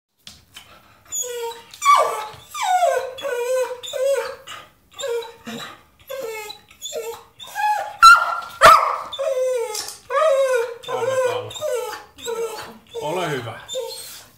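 Spanish water dog whining and yowling in a long run of short pitched calls, about two a second, many sliding down in pitch, with a sharp knock about eight seconds in.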